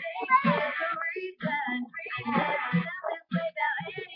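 A young girl singing unaccompanied, in short phrases broken by brief pauses.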